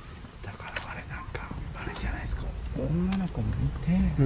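People talking in low, hushed voices, growing louder in the second half, over a low background rumble.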